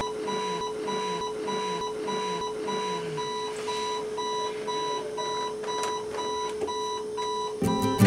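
Digital alarm clock going off: a high electronic beep repeating in rapid, evenly spaced pulses over a steady lower hum. Acoustic guitar music comes in just before the end.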